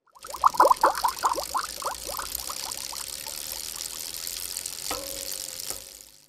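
Bubbling-water sound effect for an animated logo: a quick run of bubble blips that thin out over about two seconds, over a steady hiss. A short held tone sounds near the end.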